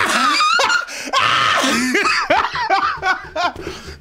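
Two men laughing loudly and hard together, their laughter swooping up and down in pitch with breathy gasps between peals.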